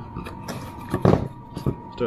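A few wooden knocks and scrapes as a length of treated timber is set down into a wooden drilling jig, the loudest knock about a second in.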